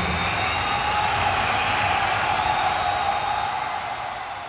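Steady hiss of a stage fog machine, fading out near the end.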